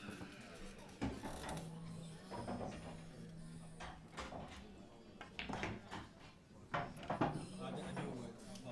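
Sharp clicks of a pool shot, loudest about seven seconds in: the cue striking the cue ball and the ball clacking into an object ball, which leaves the table. A low hum and faint background voices lie underneath.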